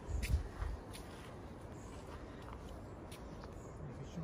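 Footsteps on soft forest ground: a few low thuds in the first second, then a faint steady outdoor background with a few small clicks.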